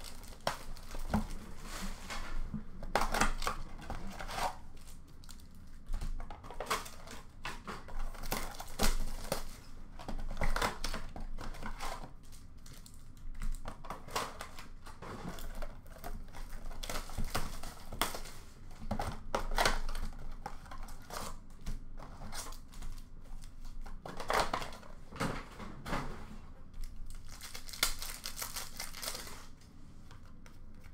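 Upper Deck hockey card pack wrappers crinkling and tearing as packs are ripped open by hand, with cards and cardboard being handled; irregular rustles with sharper tears every few seconds.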